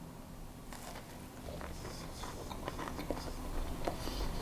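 A person chewing a mouthful of freshly baked almond financier, with faint irregular crunches from its crisp outside, starting about a second in.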